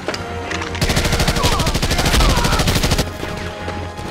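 A burst of rapid automatic gunfire lasting about two seconds, starting about a second in, over an orchestral film score.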